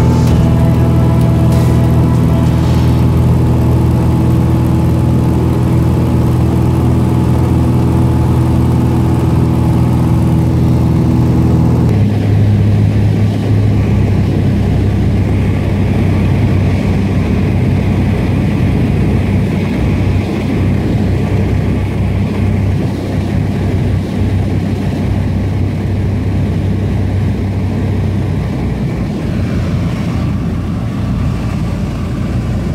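Sustained background music for about the first twelve seconds, cut off suddenly, then the steady drone of a Cessna 172's piston engine and propeller heard from inside the cabin.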